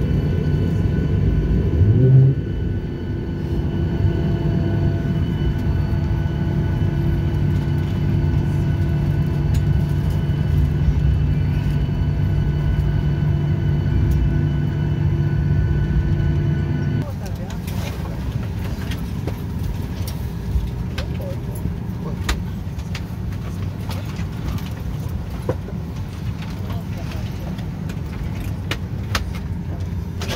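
Airliner jet engines running steadily as the plane taxis, heard inside the cabin as a hum of several fixed tones, with a short rising whine about two seconds in. About halfway through the sound cuts abruptly to quieter cabin background, with people talking and scattered clicks and knocks as passengers get up to leave.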